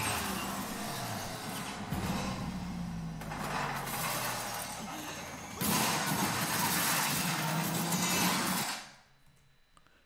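Animated fight sound effects: a body is smashed through the walls of a train car, with steady crashing and shattering of glass and metal. It grows louder a little over halfway through and cuts off suddenly near the end.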